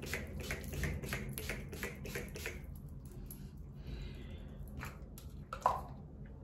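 Urban Decay All Nighter setting spray pump-spritzed about ten times in quick succession, about four sprays a second, stopping after about two and a half seconds. A faint short hiss follows, then a light click near the end.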